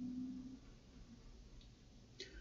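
Very quiet room tone: a faint low hum for about the first half second, then only a soft steady hiss.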